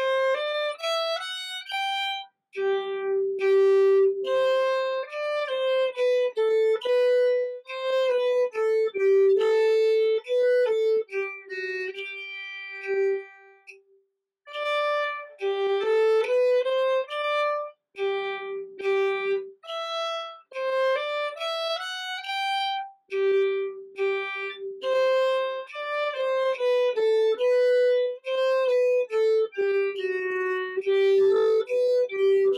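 Solo violin playing a minuet melody in short bowed notes, phrase after phrase. It breaks off briefly about halfway through, then picks up again.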